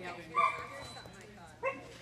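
A dog barking twice, short sharp barks a little over a second apart.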